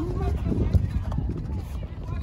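Shouts and calls from soccer players and people on the sideline during play, short and scattered, over a steady low rumble that is louder than the voices.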